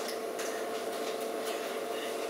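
Room tone in a darkened lecture room: a steady hum with faint hiss and a few faint, scattered clicks.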